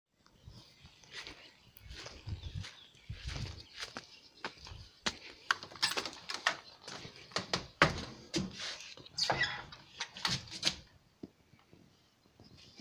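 Low thuds of footsteps, then an old wooden screen door being handled and opened: a run of irregular sharp knocks, clicks and rattles, busiest in the second half.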